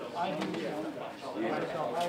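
Indistinct voices of several people talking at once, with a few short sharp sounds among them.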